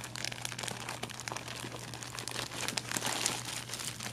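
Crackly rustling of curly hair brushing against the camera's microphone: a dense run of small crackles, loudest about three seconds in, over a steady low hum.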